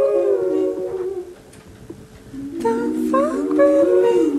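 Hip-hop beat intro: a layered, hummed-sounding vocal sample gliding up and down in pitch. It fades out about a second in and comes back about two and a half seconds in.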